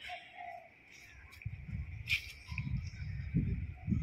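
Insects chirring steadily in garden vegetation, with a low irregular rumble building from about halfway through.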